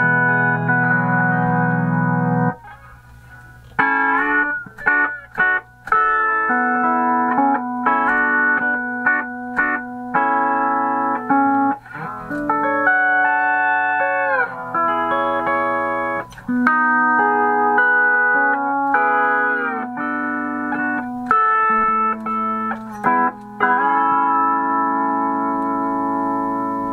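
Vintage MSA D12 pedal steel guitar played on its E9 neck: a run of sustained chords, some of them sliding up or down in pitch as the foot pedals are worked, with a short break between phrases about three seconds in.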